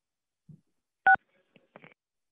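A single short two-tone telephone keypad beep on the press conference's phone line, as a caller comes on. Faint small noises on the line come just before and after it.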